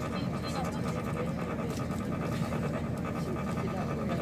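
Steady low rumble heard from inside a moving vehicle, with a fast, even pulsing sound over it.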